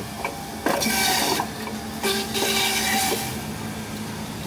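Stainless-steel centrifugal juicer running while fruit is pushed down its feed tube with a plunger and ground up for fresh juice. There are two louder grinding spells, one about a second in and another about two seconds in.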